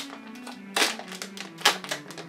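Background music with steady low held notes, and plastic packaging crinkling in two short bursts, about a second in and near the end, as a bag is handled and opened.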